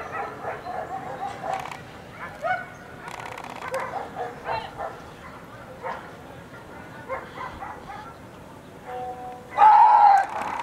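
Voices talking in the background, with a German shepherd barking at times. About half a second before the end, a loud burst sets in, most likely a shout.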